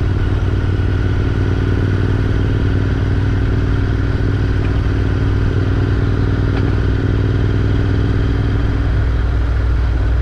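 Twin-cylinder motorcycle engine running steadily at an easy cruise, heard from the rider's seat, with a strong low rumble of road and wind noise.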